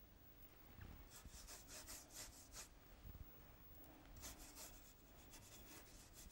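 Faint swishing of a paintbrush stroked back and forth across watercolour paper, about four strokes a second in two runs, one starting about a second in and one about four seconds in.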